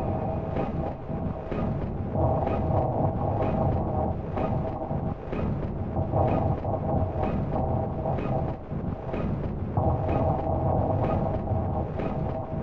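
Intro of a minimal techno track: a rumbling low drone under sustained mid-range synth tones, with a short percussive tick about twice a second.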